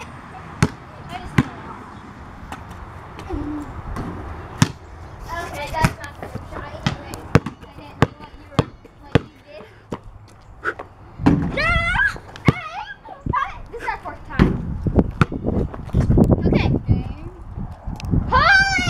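Basketball bounced on a concrete driveway, sharp bounces again and again, about two a second through the middle stretch.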